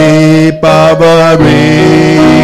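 Worship music: voices holding the closing notes of a Tamil worship song over electric keyboard chords.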